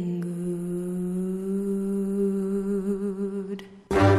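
One long unaccompanied sung note held steady with a slight vibrato, fading out near the end, as the song's beat comes in at the very end.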